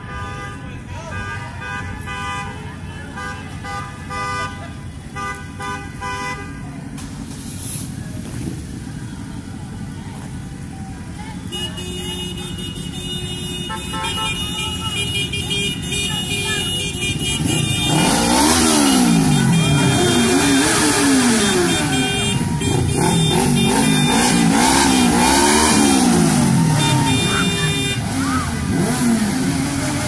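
Vehicle horns honking in long held tones as a procession of cars and motorcycles passes, then, over the last dozen seconds, motorcycle engines revving up and down again and again, loudly.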